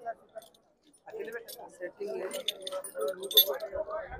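Metal bull neck chain jingling as it is lifted and handled: a run of light metallic clinks starting about a second in, over faint background chatter.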